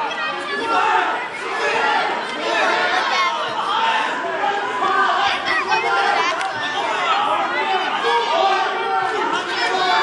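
Chatter of many overlapping voices from spectators around a wrestling mat, no one voice standing out, steady throughout, in a large gym hall.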